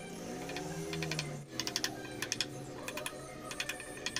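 Quick clusters of light, sharp taps from a small hammer striking a wooden workpiece, in about five short bursts, over background music.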